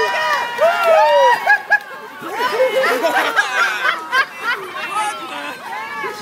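Onlookers and racers shouting and cheering excitedly, many voices overlapping, with one clear shout of "go!" about halfway through.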